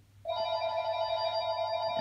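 A phone ringing: one steady, held ring tone that starts a fraction of a second in.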